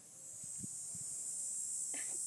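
Steady high-pitched insect buzz, like a cicada or cricket chorus, swelling in over the first half-second and then holding, with a couple of faint soft knocks and a brief short sound near the end.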